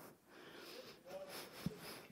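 Faint hall room tone with a distant voice from the audience, and a soft low thump near the end.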